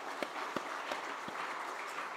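A congregation applauding: a steady patter of many hands clapping, with a few sharper single claps standing out.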